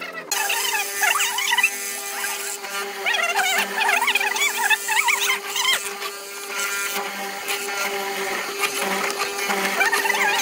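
Hollow chisel mortiser running with a steady motor hum, squealing in bursts as the square chisel and auger are plunged into pine, about a second in and again for several seconds mid-way.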